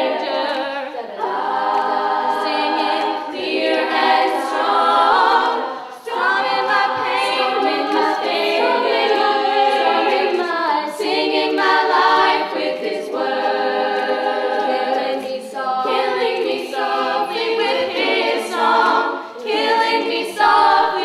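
Female a cappella group singing several vocal parts in harmony, with no instruments. The voices run in sustained phrases that break off and restart every second or two.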